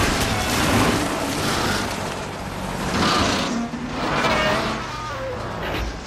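Film sound-effects mix of a helicopter's spinning rotor blades: a run of heavy whooshing surges, one every second or so, over a low mechanical rumble, with short falling whine-like tones in some of the surges.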